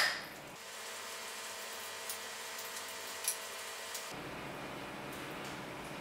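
Faint taps and scrapes of a spoon against a ceramic bowl as a spinach and ricotta filling is spooned out, over quiet steady room hiss.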